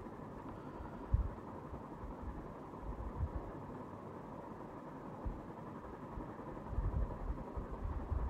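Steady low background hum of room tone, with a few faint low knocks scattered through it.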